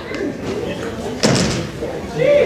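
A single sudden loud thump about a second in, echoing briefly in a large hall, with faint talk around it.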